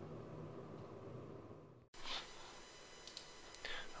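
Faint room tone, broken by a brief total dropout about two seconds in, then faint room tone again with a couple of faint clicks.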